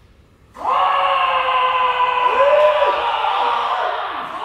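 Kendo kiai: long, drawn-out shouts from more than one kendoka, overlapping, starting suddenly about half a second in and held loudly.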